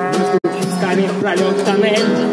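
Trombone and acoustic guitar playing a jazzy tune together, the trombone holding long notes. The sound cuts out for an instant just under half a second in.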